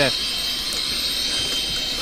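A short spoken "yes", then a steady hiss of background noise on a phone-call recording, with faint high steady tones in it.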